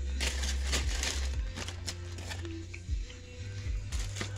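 Aluminium foil wrapper and paper bag crinkling on and off as food is handled, over background music with a steady bass.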